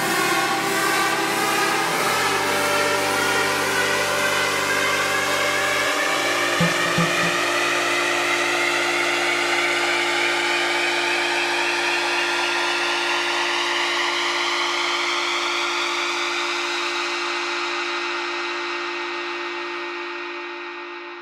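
Electronic dance music breakdown without a beat: held synthesizer chords that change twice, under a sweep that keeps rising in pitch and fades out near the end, building toward a drop.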